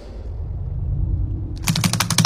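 A quick run of computer-keyboard typing clicks near the end, over a low rumble that builds through the first part.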